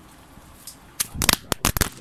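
A camera falling over and clattering as it lands: a quick burst of several sharp knocks packed into less than a second, about halfway through.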